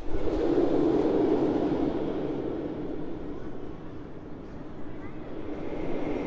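A steel roller coaster train running along its track, a rumbling roar of wheels that is loudest at first, fades in the middle and builds again toward the end. A faint rising whine comes in near the end.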